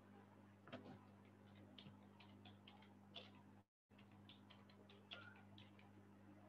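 Faint typing on a computer keyboard: two runs of irregular clicks, several a second, over a steady low electrical hum. The sound drops out completely for a moment in the middle.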